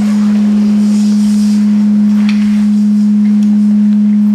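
A loud, steady low tone, one pure pitch held unchanged throughout, with faint soft hissing sounds over it.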